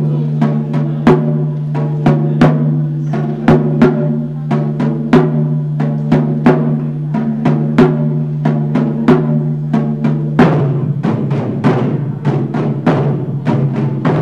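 Taiko ensemble drumming: barrel-shaped taiko drums struck with wooden bachi sticks in a steady beat of sharp strikes over a low ringing, with the strikes turning faster and denser about ten seconds in.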